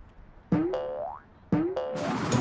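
Cartoon 'boing' sound effects for a bouncing space hopper: two springy boings about a second apart, each a sudden rising twang that fades away.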